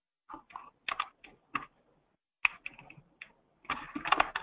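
Computer keyboard and mouse clicks: scattered single clicks, a short pause, then a quick run of typing near the end.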